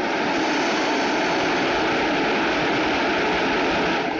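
DB class 143 electric locomotive heading a regional train as it pulls out, giving a loud, steady rushing noise.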